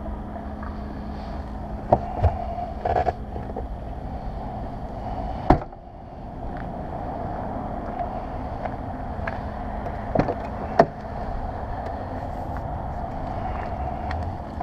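2000 Jaguar XJ8's trunk lid shut with a single loud thump about five and a half seconds in, then two clicks near the end as a rear door latch is released and the door opened, over a steady low hum and a few lighter knocks of handling.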